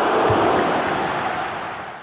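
Sound effect under an animated logo intro: a steady, loud wash of noise with a low thud about a third of a second in, fading away near the end.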